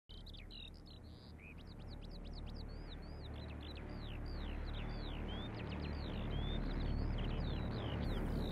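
Birds chirping: a dense run of short, high calls that sweep up and down in pitch, several a second, over a low steady hum, gradually growing louder.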